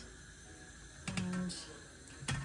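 Quiet kitchen with a light click about a second in, followed by a brief hummed 'mm' from a person's voice.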